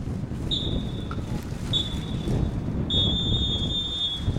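Referee's whistle blown three times, two shorter blasts and then a long one: the full-time signal ending the football match. Wind buffets the microphone underneath.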